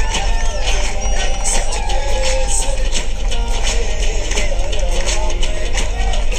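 Indian film dance song: a voice singing a bending melody over a steady, bass-heavy dance beat.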